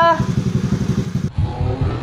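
A young man imitating a motorcycle engine with his mouth: a loud, pulsing, throaty rumble with voice-like pitch above it. It breaks off abruptly about a second and a quarter in at an edit.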